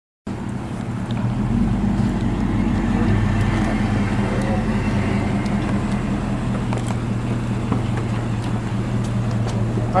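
A car engine idling with a steady low hum, over street noise.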